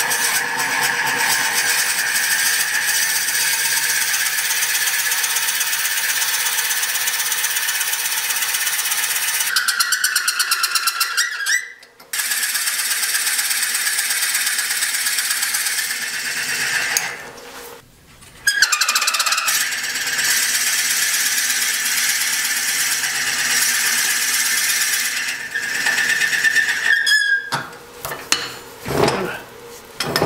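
A 1-1/8 inch Forstner bit boring into a spinning block of box elder on a wood lathe: a loud, steady cutting hiss with a squealing tone. The sound breaks off twice, briefly, and turns uneven near the end.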